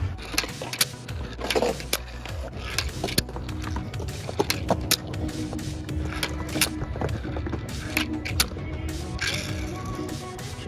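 A handskate, a hand-sized skateboard, rolling and snapping on a skatepark ledge top: many sharp, irregular clicks and clacks of its wheels and tail striking the surface, over background music.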